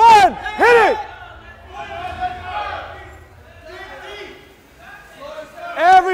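Loud shouts of encouragement from spectators, two in quick succession at the start and more just before the end, each one rising and falling in pitch. Quieter shouting and cheering voices fill the gap between them.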